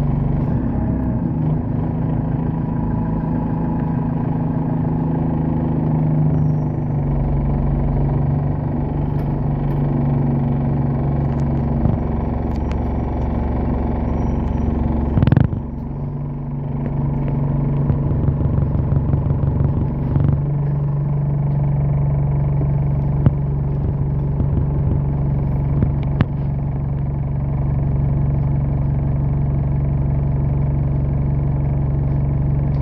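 Bus engine and drivetrain running, heard from inside the cabin as a steady low hum with a held whining tone. A single sharp knock about halfway through briefly breaks the hum, and a few small rattles follow later.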